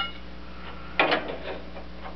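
Steel tractor parts being handled: a short metallic clink with a brief ring at the start, then a quick cluster of knocks and rattles about a second in as the cam plate and shift rod are moved together. A steady low hum runs underneath.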